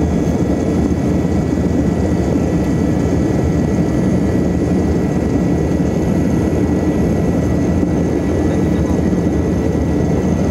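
Steady cabin noise of a Yakovlev Yak-40 in cruise flight: the drone of its three rear-mounted Ivchenko AI-25 turbofans mixed with airflow rush, with a thin steady whine above the low rumble.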